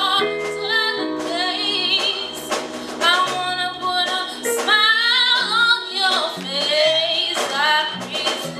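Gospel ensemble singing live: a woman's voice leads with sliding runs and ornaments over steady held chords.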